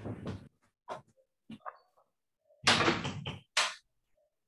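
A few short knocks, then about two and a half seconds in a louder rattling noise lasting about a second, from a door being handled, heard through a video-call microphone across the room.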